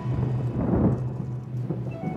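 Thunder rumbling, swelling about halfway through, over a low steady background music note.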